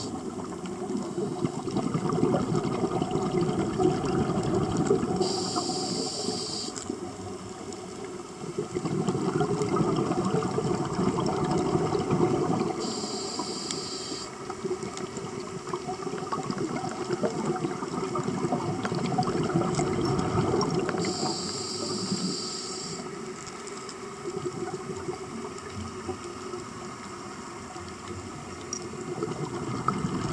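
Scuba diver breathing through a regulator underwater: three hissing inhales about eight seconds apart, each followed by a few seconds of bubbling exhalation.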